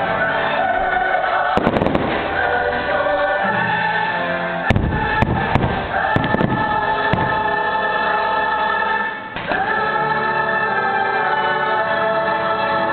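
Fireworks going off in a run of sharp bangs and cracks, the loudest about five seconds in, over the show's soundtrack of orchestral music with a choir singing held notes.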